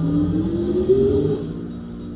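Video slot machine game music and sound effects, with a tone rising in pitch over about the first second while the last reel spins after two free-games symbols have landed, then easing off.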